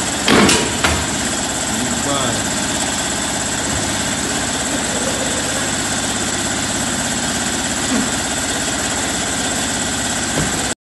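A steady mechanical drone, like a machine or engine running in the workshop, with two sharp knocks about half a second and a second in as a studded winter tyre is handled onto a wheel rim.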